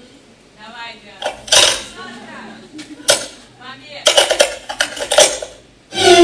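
Loud clinking and clattering, like dishes and cutlery, in a few sharp bursts: one about a second and a half in, one at about three seconds, and a quick run near the end, with short voice-like sounds between them.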